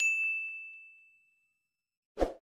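A single bright 'ding' sound effect from a subscribe-animation notification bell: one clear chime that fades out over about a second and a half.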